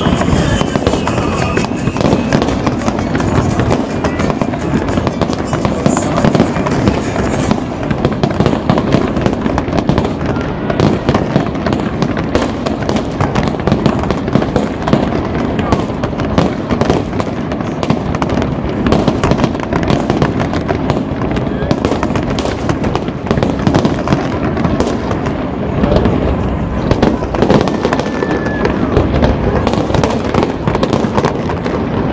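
Aerial fireworks display, shells bursting one after another in a rapid, unbroken run of bangs and crackles.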